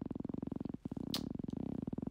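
A low, steady buzzing hum with a rapid, even pulse. It drops out briefly just before a second in, and there is a short hiss just after.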